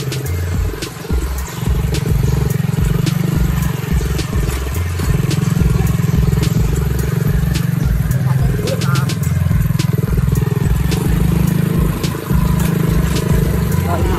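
Small motorcycle engine running as it rides along, with many scattered sharp clicks and rattles, typical of the attached tubular metal cart jolting over rough ground.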